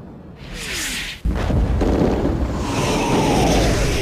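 Artillery shell whistling down in a falling pitch, then a sudden explosion about a second in, followed by the continuous rumble of a barrage with another shell's falling whistle over it.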